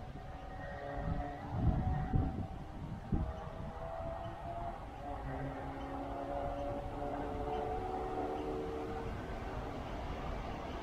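Electric suburban train approaching from a distance: a low rumble with several faint held tones that change in pitch, growing slightly louder. A few low bumps about two and three seconds in.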